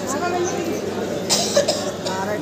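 People talking in a crowded hall, with a short, sharp cough a little past halfway.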